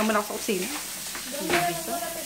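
Chicken curry sautéing in a pan on the stove: a steady frying sizzle.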